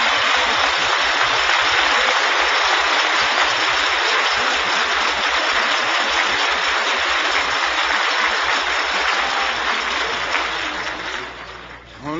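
Audience applauding in a large hall, a dense steady clatter of many hands that dies away near the end.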